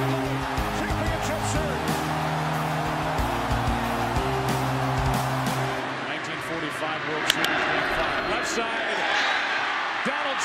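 Background music over crowd noise, which stops about six seconds in. After that comes the steady noise of a ballpark crowd, with a single sharp crack of a bat hitting a pitched ball about seven seconds in.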